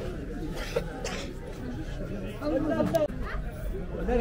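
Indistinct chatter of people talking in a busy market, with one voice coming through more clearly and louder about two and a half seconds in.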